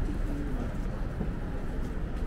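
Steady low rumble of outdoor street noise, with a few faint, short, low-pitched calls in the first second and a half.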